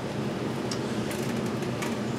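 Steady background hum and hiss, like an air-conditioning unit or distant traffic, with a couple of faint light clicks.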